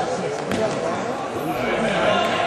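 A handball bounced on a concrete court, one sharp impact about half a second in, over the steady chatter of many voices from players and spectators.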